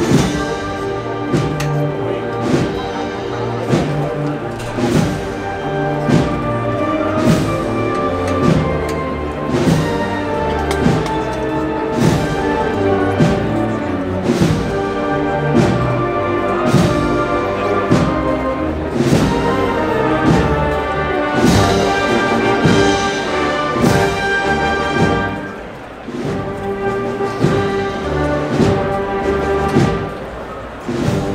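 Processional band playing a Holy Week march, with sustained brass chords over a steady, regular drum beat. The music drops briefly about 25 seconds in, then carries on.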